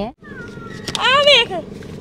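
A child's voice: one drawn-out, high-pitched call about a second in that rises and then falls, over the steady hum of a car.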